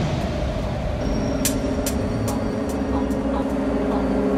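Intro sound effects: a deep, steady rumble with scattered sharp crackles, joined about a second in by a low sustained chord of held synth tones.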